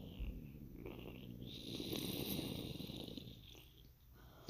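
Explosion sound effect in its rumbling aftermath: a low rumble with a hiss above it, slowly fading away near the end.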